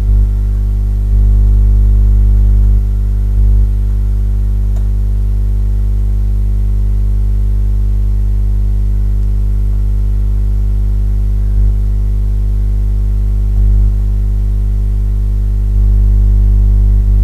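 A loud, steady low buzzing hum with no speech. Its loudness steps up and down slightly a few times.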